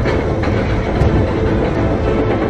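A roller coaster train rumbling and rushing along its steel track, a dense, steady low roar.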